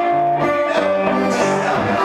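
Live blues duo: guitar playing a plucked rhythm with a blues harmonica holding long notes over it.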